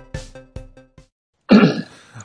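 The tail of electronic intro music, a run of quick plucked notes, stops about a second in. After a short silence a man clears his throat loudly, once.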